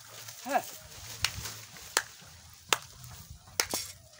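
A short rising-and-falling voice sound about half a second in, then a series of sharp dry crunches about every three-quarters of a second: footsteps on dry grass and dead plantain leaves.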